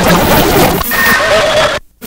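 Experimental noise music: a dense wash of hiss and rumble with a wavering pitched tone running through it, which cuts out abruptly near the end.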